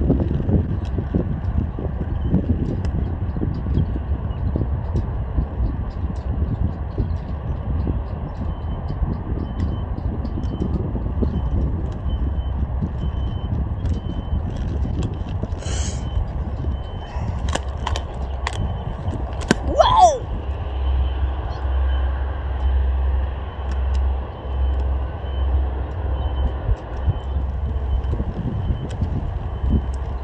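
Wind buffeting the microphone on an open court, a steady low rumble, with a few sharp clicks and knocks about 16 to 20 seconds in.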